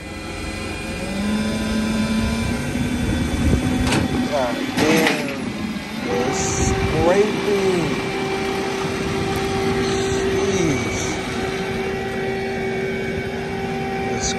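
Rollback tow truck's winch drive running with a steady whine as it drags the car up the tilted bed. The whine steps up to a higher pitch about six seconds in and holds there.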